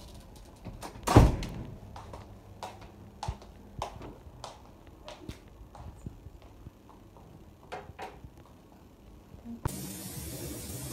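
A hotel room door thumps loudly about a second in, followed by scattered light clicks and knocks of footsteps and a breakfast tray being carried in. Just before the end, steady running water starts, filling a bathtub.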